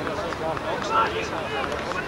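Indistinct voices of several football players and spectators calling and talking on the pitch, overlapping, with no clear words.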